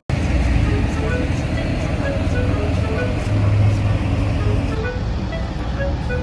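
Steady low rumble of city street traffic, with a sparse melody of short background-music notes over it.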